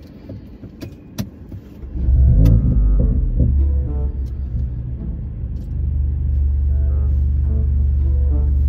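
A car engine heard from inside the cabin, coming in suddenly about two seconds in with a short rev and then settling into a deep, steady rumble.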